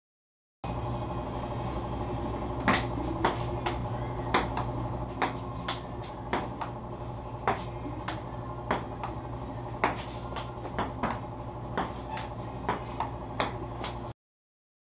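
Table-tennis rally: a ping-pong ball clicking sharply off paddles and the table, about two hits a second, starting a couple of seconds in. A steady low hum runs underneath.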